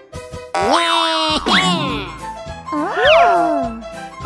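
Cartoon character voices making wordless, high-pitched exclamations that slide up and down in pitch, twice: one starting about half a second in, another around three seconds in. Children's background music plays underneath.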